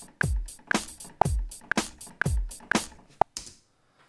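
Sampled drum kit from the TX16Wx software sampler played live over MIDI in a simple beat: deep kicks about once a second with sharp snare and hi-hat hits between them. A metronome click ticks twice a second under it. The beat stops about three and a half seconds in.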